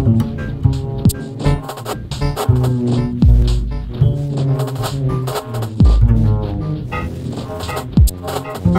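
Upright bass plucked by hand, improvising over a modular synthesizer's electronic sounds. Short clicks and pitched tones are punctuated by a few deep thumps whose pitch drops quickly.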